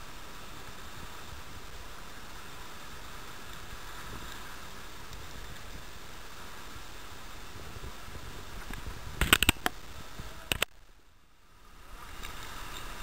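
Steady hiss of churning sea water and foam around a kayak, with a quick cluster of sharp knocks about nine seconds in and one more a second later. The sound then dips away briefly near the end.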